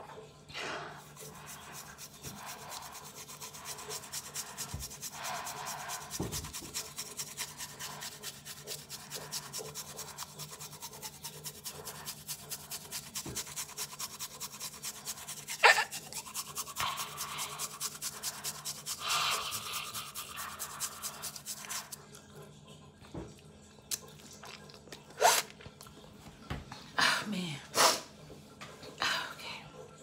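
Toothbrush scrubbing a toothpaste-coated tongue with fast, even back-and-forth strokes, several a second, for about twenty seconds, with one sharp click partway through. The scrubbing then stops, and a few short sharp sounds follow near the end.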